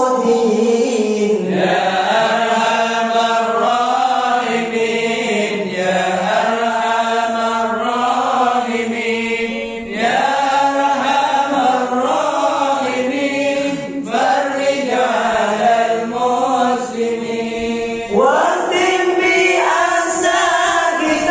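A group of men chanting an Islamic devotional dzikir together into microphones, in long sustained phrases that dip briefly about every four seconds.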